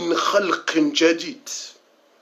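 A man's voice speaking for about a second and a half, then a pause.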